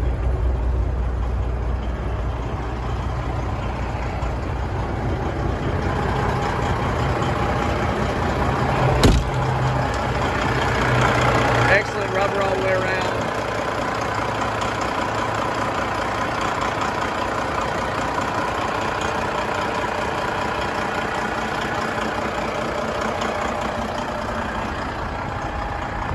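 Warmed-up 12.7-litre Detroit Series 60 diesel idling steadily. It is heard first as a low hum from inside the truck's cab, with a single sharp knock about nine seconds in, then up close at the open engine bay, where it sounds brighter.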